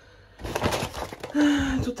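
Crinkling rustle of a paper carrier bag and plastic-wrapped food containers being handled and pulled out, lasting about a second.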